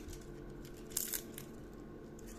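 Bay leaves being torn and crumbled by hand, a brief crisp crackle about a second in.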